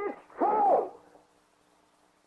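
A man preaching: one drawn-out word in the first second, then a pause in which only a faint steady hum of the old recording remains.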